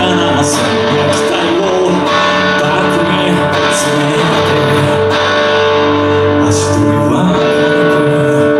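Live rock band playing: electric guitars over bass guitar and a drum kit.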